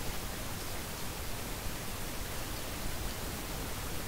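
Steady, even hiss of background noise, with no distinct events.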